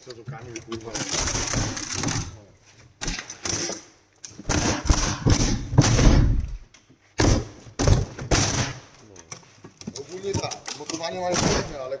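Heavy cardboard crate walls being torn and ripped apart, in long rasping tears, with several sharp knocks and heavy thumps against the crate.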